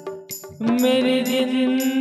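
Bundeli Rai folk music: after a brief lull, a long held note starts about half a second in, with short high ticks repeating over it.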